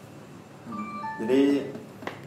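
A short electronic chime of three or four quick notes, about a second in.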